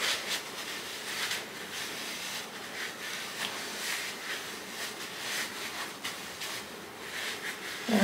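A paper towel wiping over oiled skin of an underarm, taking off leftover wax after waxing. It makes a series of soft, irregular rustling strokes.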